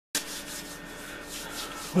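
Rubbing, brushing noise that starts suddenly just after the start and then runs on evenly, over a faint steady hum.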